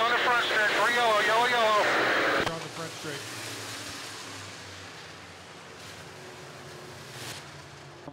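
A man's voice speaking for the first couple of seconds, then a quieter steady drone of dirt-track modified race car engines circling slowly under caution, mixed with open-air grandstand ambience.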